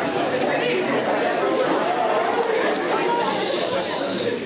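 Many voices talking over one another at once: audience and performers' chatter, with no single clear speaker.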